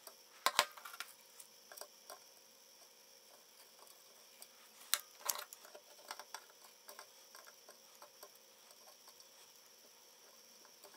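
Faint small clicks and ticks of a soldering iron and pliers working a resistor lead onto a circuit-board pin, with two louder sharp clicks about half a second in and about five seconds in.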